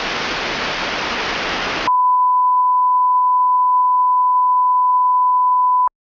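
Television static hiss for about two seconds, then a single steady beep tone held for about four seconds that cuts off abruptly.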